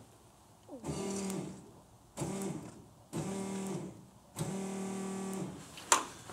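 Electric fuel pump switched on in four bursts of about a second each, a steady buzzing hum that settles in pitch as each burst starts, filling the carburetor's float bowls to check the float level. A sharp click near the end.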